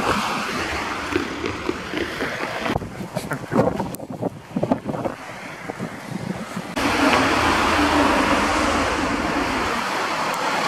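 Outdoor street sound dominated by wind buffeting the camera microphone, with passing road traffic and brief faint voices. The sound changes abruptly several times at shot cuts, and about seven seconds in turns into a louder, steadier rush with a low hum.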